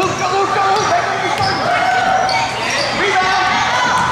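A basketball being dribbled on a hardwood gym floor, with shoes squeaking on the court and voices in an echoing gymnasium.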